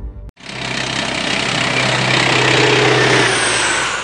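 Helicopter noise, turbine and rotor, swelling loud over about three seconds and then fading away like a passing aircraft, with a steady low hum underneath.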